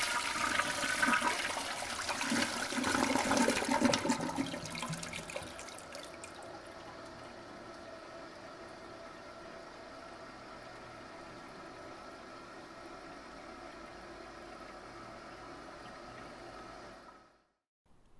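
A toilet flushing: a loud rush of water for about five seconds, easing into a quieter steady hiss of running water that cuts off suddenly near the end.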